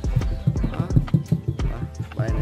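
A quick run of low thuds, about six a second.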